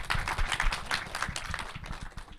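Audience applauding, dense hand claps that gradually die down.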